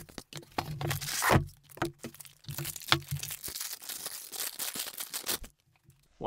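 Packaging being handled and pulled apart: foam packing inserts and the cardboard box rustle and scrape in irregular bursts, with a few sharp knocks. It stops about half a second before the end.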